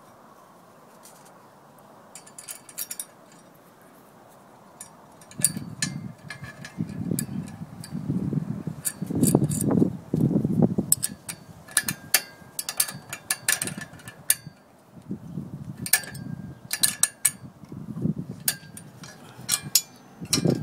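Steel wrench and nuts clinking on a galvanized fence bracket as nuts are tightened onto concrete anchor bolts: scattered sharp metallic clicks, some briefly ringing, starting about five seconds in over low, irregular handling rumble. The first few seconds are quiet apart from a faint low hum.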